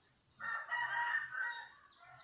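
A rooster crowing once: a single held call about a second and a half long, starting about half a second in.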